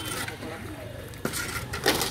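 A steel shovel scraping and clanking against an iron pan as wet concrete is shovelled into it, with a sharp clank a little past halfway and more scrapes near the end. Under it runs a steady low hum from the concrete mixer's engine.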